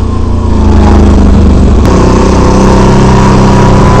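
Loud Can-Am Renegade 800R ATV with its Rotax V-twin engine running under way, its pitch easing off in the first second, then climbing steadily toward the end as the throttle is opened.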